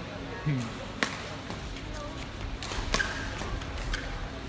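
Badminton rackets striking a shuttlecock in a rally: two sharp cracks about two seconds apart, one about a second in and one near three seconds, over a steady low hall background.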